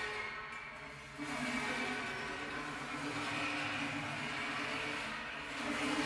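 A grand piano played inside on its strings in improvised music: a sustained, noisy, rasping texture over a low steady drone, coming in abruptly about a second in and holding on.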